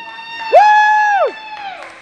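A person whooping a long, high "woooo" in celebration about half a second in, the pitch sweeping up, holding, then falling away at the end.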